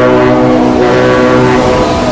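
A boat's horn sounding one long, steady blast that stops shortly before the end.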